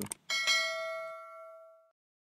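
Notification-bell chime sound effect from a subscribe-button animation: a single ding about a quarter second in, ringing out and fading away over about a second and a half.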